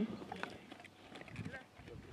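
Faint hoofbeats of a horse setting off from a standstill into a gallop on grass.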